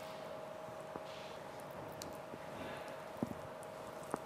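A spoon pressing and spreading a thick, sticky sweet mixture into a metal tray: soft scraping and squishing with a few light taps, the sharpest about three seconds in. A steady faint hum runs underneath.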